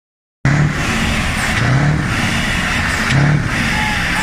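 Scania 143M 450's V8 diesel engine running loud, swelling in regular low pulses a little more than a second apart. The sound cuts in suddenly about half a second in.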